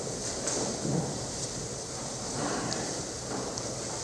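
Shuffling and rustling of a small congregation sitting down in wooden pews, with a few faint knocks and creaks.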